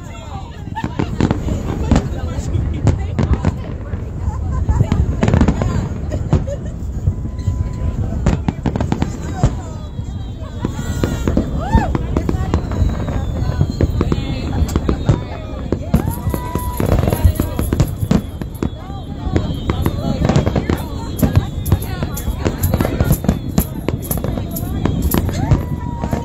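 Aerial fireworks display: many bangs in quick succession, one after another throughout.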